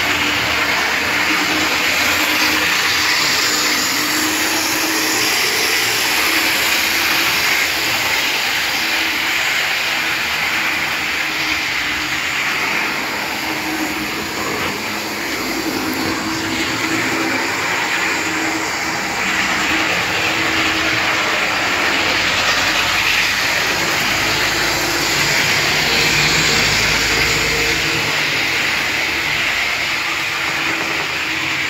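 H0-scale model train running on the layout, its small electric motor and wheels on the track giving a loud, steady whirring hiss.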